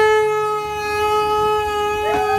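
Conch shell (shankha) blown in one long, steady, loud note, marking the moment the phonta is put on the brother's forehead.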